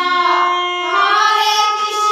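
Devotional kirtan sung by women's voices over a harmonium. The harmonium's reeds hold steady notes beneath a sung line that sustains and slides between pitches.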